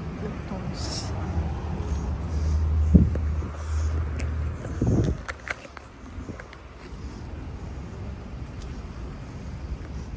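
A motor vehicle passing on the street: a low engine and road rumble that swells to its loudest about three seconds in and fades away by about five seconds.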